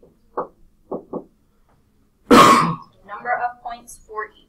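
A single loud cough from a person, lasting about half a second, a little past the middle. Softer voices follow it.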